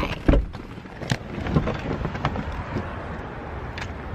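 Rumbling handling noise on a phone microphone as it is moved about, with several scattered knocks and clunks, the loudest about a third of a second in.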